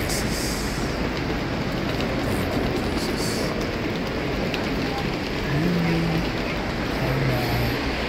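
Steady traffic noise from cars running and idling, with brief snatches of people's voices in the second half.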